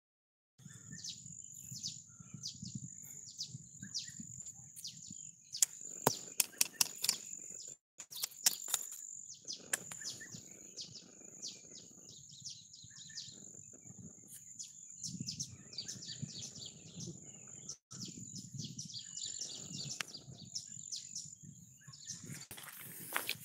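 Forest birds chirping in many quick falling calls over a steady high-pitched insect drone, with a low rumble of movement on the microphone. A run of sharp clicks and snaps comes about six to nine seconds in.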